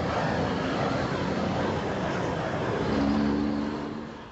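Gas torch burner roaring steadily while heat-shrinking a fiberglass-reinforced wear cone sleeve onto a pipeline joint, dropping away at the very end.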